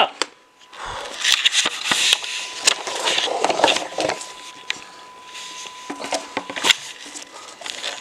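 Handling noise from a wooden Quran stand with a metal adjustable post: irregular scrapes, rustles and sharp clicks and knocks as the loose, floppy stand is moved and readjusted.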